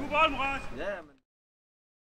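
A voice calling out on the pitch, cut off about a second in to dead silence.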